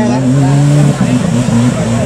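Off-road 4x4 competition vehicle's engine running steadily with a low, even hum; its pitch wavers briefly about halfway through.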